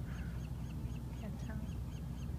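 A bird calling in a rapid, even series of short high chirps, about four or five a second, over a steady low background rumble.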